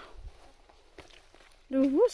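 A few faint rustles in dry leaf litter, with a small click about a second in, as the forager moves among the dead leaves.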